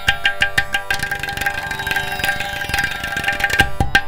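Carnatic percussion: a ghatam (clay pot) and a mridangam played in quick strokes over a steady drone, the strokes lighter through the middle.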